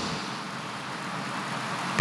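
Steady background noise, an even hiss and rumble of room tone, in a pause between spoken phrases.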